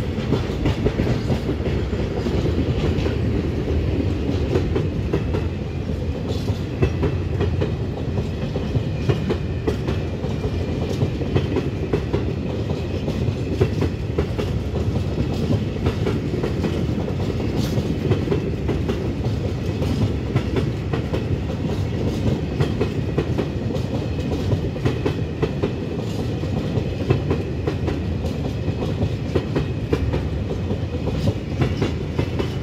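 Freight wagons of a works train rolling past on the near track: a steady rumble of wheels on rail with a continuous clickety-clack of wheelsets over rail joints.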